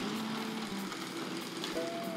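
Model locomotive running slowly under Zero 1 digital control: a faint, steady motor hum with light running noise from the wheels on the track.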